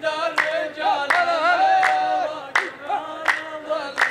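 Rows of men chanting a sung verse in unison, unaccompanied, with one sharp group handclap about every three-quarters of a second, five claps in all.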